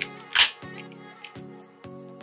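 A metal crab cracker breaking the shell of a boiled blue crab claw: a small click, then one sharp crack less than half a second in. Steady background music plays underneath.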